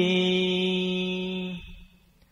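A voice chanting Vietnamese verse in a slow recitation style holds one long, steady note at the end of a line, then fades out about one and a half seconds in.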